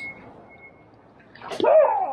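A sharp crack of a bat hitting the ball about one and a half seconds in, followed at once by loud shouting voices of players and spectators reacting to the hit.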